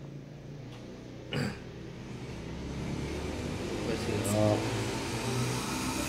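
A motor vehicle going by, its hum and rush of noise growing louder over the last few seconds. There is a single knock about a second and a half in, and a few faint voice-like sounds.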